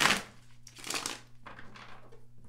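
A deck of tarot cards being shuffled by hand, in rustling bursts: a loud one right at the start, then two softer ones around one second in and near the end.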